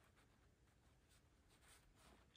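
Very faint snipping of fabric scissors trimming cloth close to a seam line, barely above silence, with a few soft cuts in the second half.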